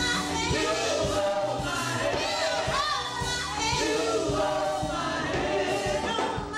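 Women's gospel group singing together into microphones, several voices over instrumental accompaniment with a steady beat.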